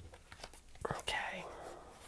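Tarot cards being picked up and squared into a deck, making light scattered clicks. A brief soft hiss comes about a second in.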